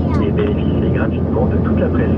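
Steady drone of engines and airflow inside a jet airliner's cabin during descent, with a recorded cabin announcement playing over the PA on top of it.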